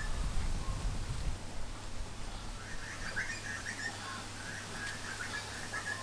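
Birds chirping in the background, a run of short high calls through the middle of the stretch, over a steady low hum and rumble.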